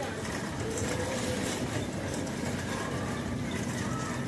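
Shopping cart rolling across a hard store floor, its wheels and wire basket making a steady rattling noise.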